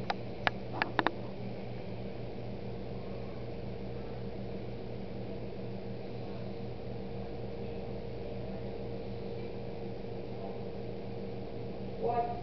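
Steady low mechanical hum with a faint steady tone above it, unchanging throughout, and a few sharp clicks in the first second.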